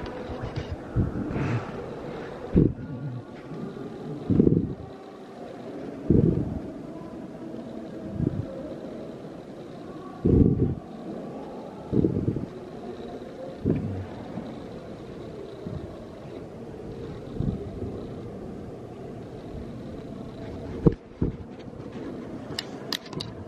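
Low bumps on a handheld camera's microphone roughly every two seconds, over a steady low room hum, with one sharp click near the end.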